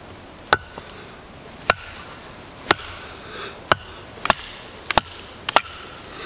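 A wooden baton striking the spine of a knife driven into a log, batoning it through to split the wood. It makes about seven sharp knocks, roughly one a second and a little quicker near the end, some followed by a brief ringing tone.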